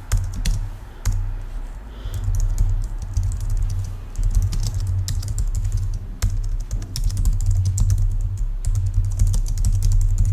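Typing on a computer keyboard: runs of quick clicking keystrokes broken by short pauses, over a heavy low rumble that rises and falls with the typing.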